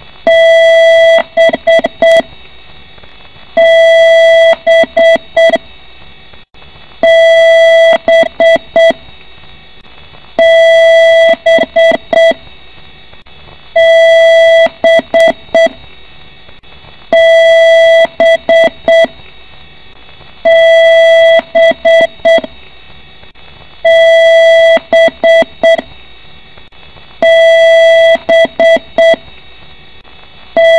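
A PC's BIOS beeping through its internal speaker: one long beep followed by a quick run of short beeps, the pattern repeating about every three and a half seconds, nine times. Loud and harsh, it is a POST beep code, the kind a computer gives when it finds a hardware error at startup.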